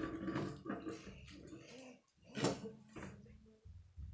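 Plastic Lego pieces being handled and fitted together on a wooden table, with one sharp click about two and a half seconds in.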